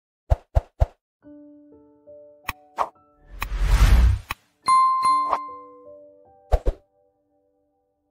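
Logo intro sting made of electronic sound effects: three quick pops at the start, a few held synth tones, a whoosh that swells to the loudest point about three and a half seconds in, then a bright bell-like ding and a few clicks, fading out before the end.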